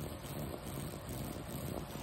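Steady background noise with a pool pump running, with no distinct knock, click or splash standing out.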